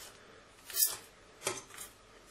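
A small metal trowel scraping wet grout across glazed ceramic tiles: three short scrapes, the loudest a little under a second in.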